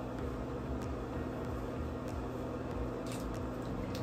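A steady low mechanical hum of a small room, with a few faint clicks and rustles as hair is twisted into a bun and clipped with a plastic hair claw, the last of them about three seconds in.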